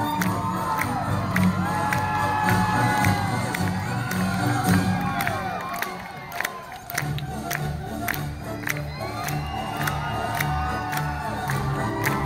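Crowd cheering and whooping over music with a steady beat, with rhythmic clapping in time. The music drops away briefly about halfway through.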